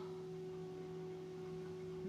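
A steady low hum with fainter, higher tones over it, holding one unchanging pitch.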